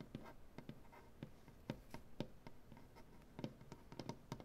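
Fingernails and fingertips tapping and scratching on a wooden tabletop: soft, irregular taps a few times a second, with light scratching in the first half second.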